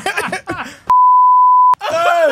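A single steady, high electronic bleep a little under a second long, switching on and off abruptly with all other sound cut out beneath it: an edited-in censor bleep over speech. Voices and laughter come just before it.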